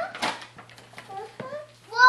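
Small children's brief vocal sounds and babble, broken by a few short rustles and knocks, with a loud child's cry starting right at the end.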